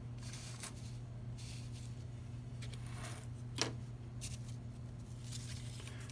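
Cut corrugated cardboard pieces sliding and scraping softly on a tabletop as they are pushed into a row, with a single sharp tap about three and a half seconds in, over a faint steady low hum.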